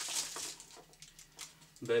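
Faint light clicks and rustling from handling a spare camera battery and its packaging, in a quiet small room.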